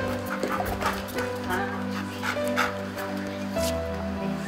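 Several short vocal sounds from an Old English Sheepdog, heard over steady background music.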